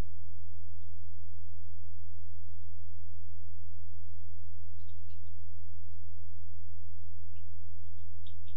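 Steady low electrical hum, loud and unchanging, with a few fainter overtones above it, typical of mains hum on the recording.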